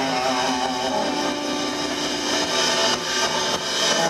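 Live blues band playing instrumentally on electric guitars, with one long held note about a second in.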